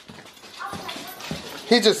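Footsteps and rustling as someone walks across a wooden floor, ending in a short spoken word.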